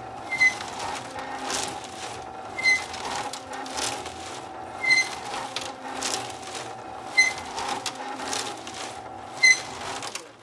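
Motorized gas-tank rotisserie turning: a short, high squeak about every two and a quarter seconds, over the steady hum of its electric gear motor and the rattle of loose nuts and washers tumbling in acid water inside the tank. The squeak developed after the rig had run for a while, a sign of a dry bearing point that wants grease.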